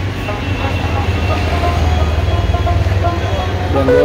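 A vehicle engine running close by, a steady low rumble, with faint voices over it. Speech starts right at the end.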